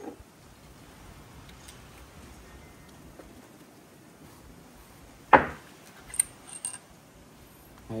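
A few light metallic clicks and clinks about six seconds in: a screwdriver and the steel 2-3 shift valve knocking against the aluminium 4L60E valve body as the valve is worked out of its bore.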